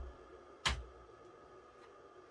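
Faint steady hum of an ILG Model 423 three-phase motor idling unloaded on power from a rotary phase converter, running nicely. One sharp knock comes about two-thirds of a second in.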